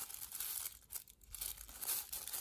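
Paper wrapping rustling and crinkling as a nylon NATO watch strap is pulled out of it, in short bursts with a quieter spell about a second in.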